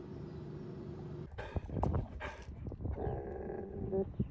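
A steady low hum for about the first second, then a few knocks and rustles and a short pitched whine from a Great Pyrenees puppy about three seconds in.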